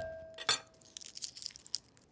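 A chef's knife blade slapped flat down onto garlic cloves on a wooden cutting board: one sharp smash about half a second in, with the steel blade ringing briefly. A patter of light clicks and crackles follows until near the end.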